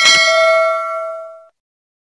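Notification-bell 'ding' sound effect from a subscribe-button animation: one bell strike ringing with several clear overtones, fading, then cut off suddenly about a second and a half in.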